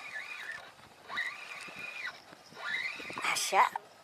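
A man's high-pitched wordless cries, three drawn-out calls, the middle one held steady for about a second and the last rising and wavering.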